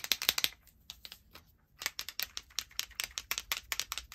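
Rapid, irregular clicking and tapping from a white Posca paint pen being worked to flick white paint splatters onto a card, with a short pause about a second in.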